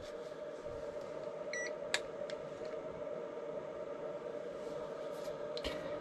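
A steady electrical hum with one short electronic beep about a second and a half in, followed by a sharp click and a few fainter clicks.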